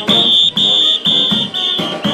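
Brass band playing, with a shrill whistle blown in repeated blasts of about half a second each, roughly two a second, riding over the band.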